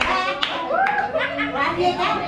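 A few sharp hand claps, about half a second apart in the first second, over people talking.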